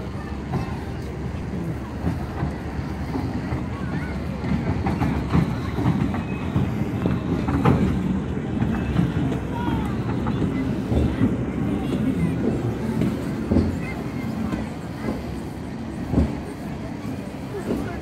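Legoland Windsor Hill Train carriages rolling past on their rails with a steady low rumble and occasional knocks from the wheels over the track, with people's voices in the background.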